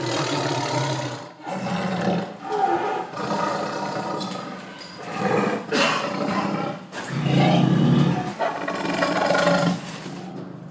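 Tiger roaring and growling repeatedly: about six long, rough roars in a row, each a second or two long, with short breaks between them.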